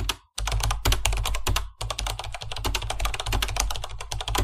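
Rapid typing on a computer keyboard: a fast, continuous run of key clicks, broken by two brief pauses in the first two seconds.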